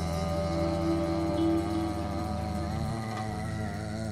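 Live jazz ensemble playing long held notes over a steady low drone, with one held tone swelling louder about a second and a half in.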